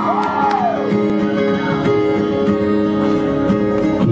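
Live band opening a song with strummed acoustic guitar chords. A shout or whoop from the crowd rises and falls just after the start.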